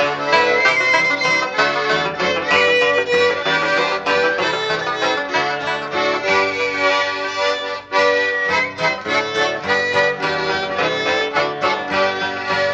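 Instrumental break in a 1970s German folk song recording: a melody in long held notes over plucked string accompaniment, with no singing.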